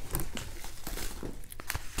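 Yellow padded mailer envelopes crinkling and rustling as a hand sorts through them and lifts one out, an irregular run of small crackles and clicks.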